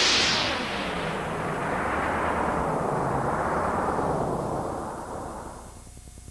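A long whooshing sound effect that starts as a high hiss, slides steadily down into a low rumble and fades out over about five seconds.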